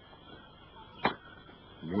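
A single sharp click about a second in, over a steady background hiss with a faint high tone, followed near the end by a short vocal sound.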